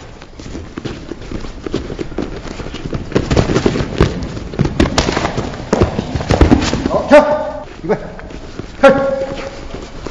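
Two fighters sparring in boxing gloves and padded protectors: irregular thuds and smacks of blows and scuffling as they exchange and clinch. Two short, sharp shouts about seven and nine seconds in are the loudest sounds.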